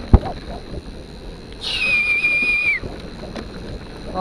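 A sharp knock just after the start, then a single high, steady whistle of about a second near the middle that dips in pitch as it ends, over the constant rumble of a mountain bike rolling fast over a forest trail.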